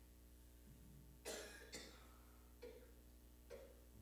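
Near silence over a low steady hum, broken by a person coughing once, a little over a second in, then by three softer, shorter sounds.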